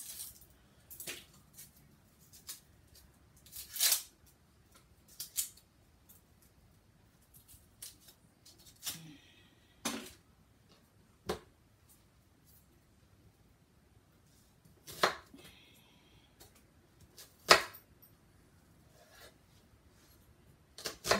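Dry onion skin being peeled off by hand, crackling and rustling in short scattered bursts, with a few sharp clicks and knocks, the loudest about three seconds before the end.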